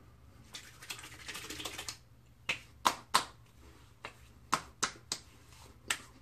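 Hands slapping aftershave onto a freshly shaved face and clapping it between the palms: about eight sharp pats spread over three and a half seconds, after a short soft rustle.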